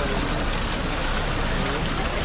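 Water pouring from the spouts of the Barcaccia, a marble boat fountain, and splashing into its basin as a steady hiss. The spouts run at weak water pressure. A crowd's chatter sounds through it.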